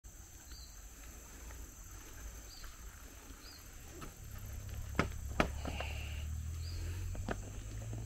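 Outdoor ambience of a steady high insect drone with a few short chirps. About four seconds in, a low rumble and several sharp clicks and knocks begin: handling noise from the handheld camera grip.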